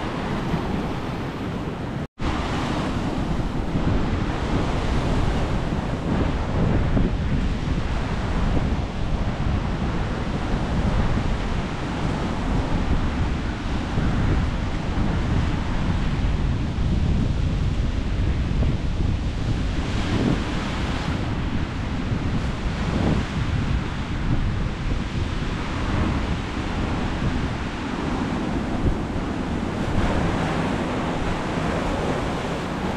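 Sea surf washing onto a rocky shore, with wind rumbling on the microphone throughout. The sound cuts out for a split second about two seconds in.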